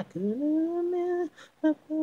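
A single voice singing a cappella, wordless. A note slides up and is held for about a second, then after a short break a brief syllable comes, and another held note begins near the end.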